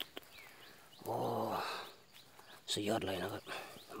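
A low-pitched human voice in two short utterances, about a second in and again near three seconds. Faint short high chirps of small birds are heard in the background.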